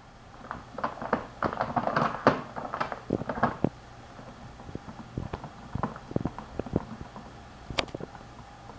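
A kitten rummaging in a cloth tote bag, rustling the plastic bags inside and knocking against the cans and box in it: a dense flurry of rustles and taps in the first few seconds, then scattered clicks.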